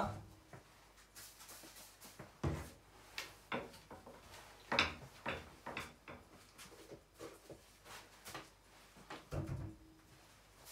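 Irregular light knocks and clicks of objects being handled, the sharpest about five seconds in, with a duller thump near the end.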